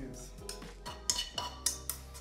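A metal utensil scraping and clinking against a nonstick frying pan, with a few sharp clinks in the second half, over background music.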